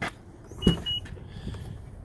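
Honda CR-V power tailgate being released: a click, then a louder click with two short high beeps as the gate starts to move, followed by its motor running as it lifts.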